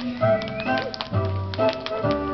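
Music playing, with the irregular clicks of a group of children's tap shoes striking the stage floor.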